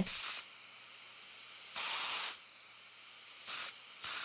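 High-speed dental handpiece with its air-water spray running, giving a low steady hiss with three short, louder bursts of hiss: at the start, about two seconds in, and near the end.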